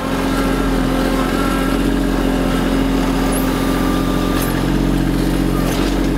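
Kubota B2650 compact tractor's three-cylinder diesel engine running steadily as the tractor is driven up to a dirt mound and the loader bucket is lowered, with a small shift in its note about three quarters of the way through.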